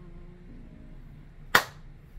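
A single sharp hand clap.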